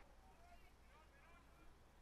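Near silence, with faint far-off voices.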